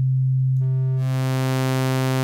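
An Ableton Wavetable synth holds one low note that starts as a pure sine tone. About half a second in, overtones fade in as the oscillator's wavetable position is moved to a sawtooth wave, and the note turns bright and buzzy.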